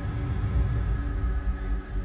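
Dark ambient drone: a low rumble with several steady held tones above it, unchanging throughout.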